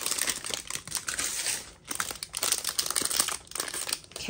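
Foil blind-box bag and a small clear plastic accessory bag crinkling as they are handled and pulled open, in irregular crackles with a short lull about two seconds in.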